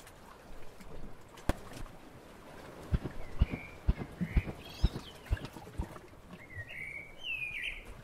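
Jungle bird calls: short chirping, up-and-down calls, a few at first and a busier burst near the end. They sound over a run of about eight soft, low footstep thumps in the middle, roughly two a second.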